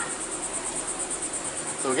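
Crickets chirping: a steady, high-pitched trill of rapid, even pulses.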